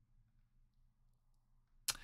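Near silence, room tone only, broken near the end by one brief sharp sound with a short hissy tail.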